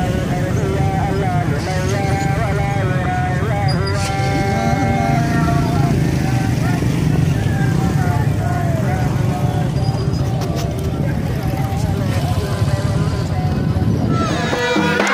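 Motorcycle engines running as a group of motorcycles rides past, over voices singing with long, wavering held notes.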